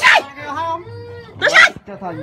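Raised, agitated voices in a heated argument, with two sharp, shrill cries, one right at the start and one about a second and a half in.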